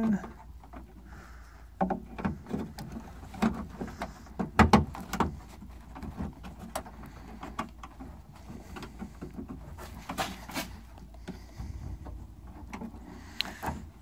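Scattered clicks and knocks of a door lock cylinder and hands working inside a pickup truck's door as the cylinder is fitted into its hole, with the loudest knocks a third of the way in and again about three quarters in.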